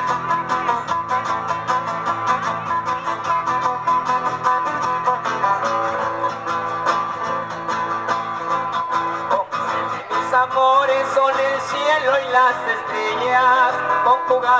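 Two acoustic guitars playing a chilena through a PA, in an instrumental passage with plucked melody over a strummed rhythm.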